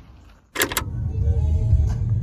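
Car cabin noise while driving on a wet road: a steady low engine and road rumble, starting just after a short sharp clatter about half a second in.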